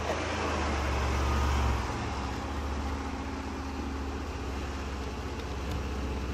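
A car running, heard from inside the cabin: a steady low rumble that is a little louder for the first couple of seconds, then settles.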